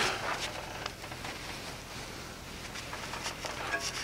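Quiet workshop room tone with a few faint light clicks and rustles of handling, and no hammer blows.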